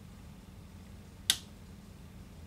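A single sharp click about a second in, as a hand works at a tube amplifier's metal chassis, over a faint steady low hum.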